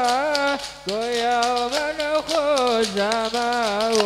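A man singing a sholawat, an Islamic devotional song, through a microphone, with wavering, ornamented notes and a short break for breath just under a second in. It is backed by a fast, rattling beat of hand percussion from frame drums (rebana).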